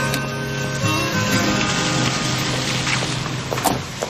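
Background score music with sustained notes, fading out near the end, where a single knock sounds.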